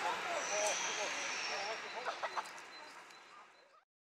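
Class 52 steam locomotive and its train moving away, a steady rushing noise with short voices over it, fading out to silence a little before the end.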